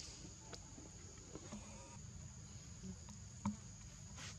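Steady high-pitched chorus of forest insects, faint, with a few small clicks and rustles; the sharpest click comes near the end.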